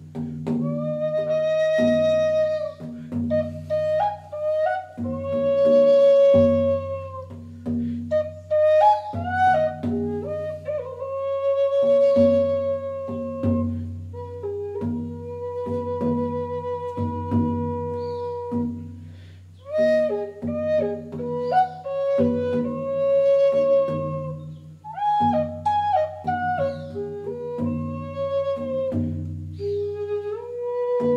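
Flute playing a slow melody of long held notes, with a few slides between pitches, over a steady low drone.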